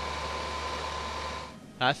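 Steady rushing background noise with a thin steady high hum, dropping away about one and a half seconds in.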